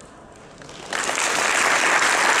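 Audience applauding in a hall, starting suddenly about a second in and carrying on steadily.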